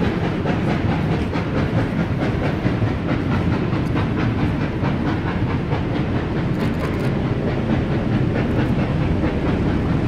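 Passenger train carriages rolling past close below, a steady rumble with the wheels clicking over the rails.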